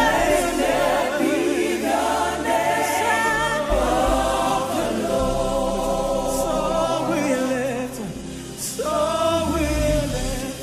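Gospel praise singing by a group of voices, notes held with vibrato over instrumental backing. The singing dips briefly about eight seconds in before swelling again.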